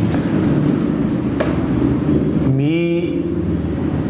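A man's voice in conversation, with a drawn-out voiced sound that bends in pitch a little past halfway, over a steady low rumble.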